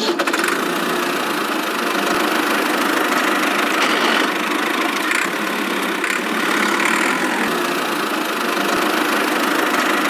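Tractor-style engine running steadily with a rattly, knocking chug and no deep bass, the running sound of a miniature toy tractor pulling a trailer.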